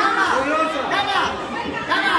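Several people talking at once: overlapping chatter of voices with no single clear speaker.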